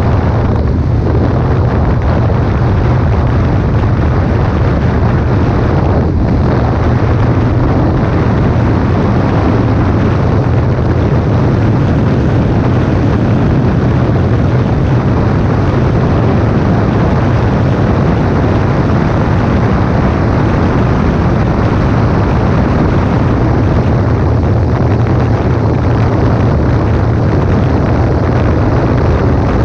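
Yamaha X-MAX 250 scooter's single-cylinder engine drone and wind rush while cruising at a steady speed: a loud, unbroken, low-heavy rush with no change in pitch.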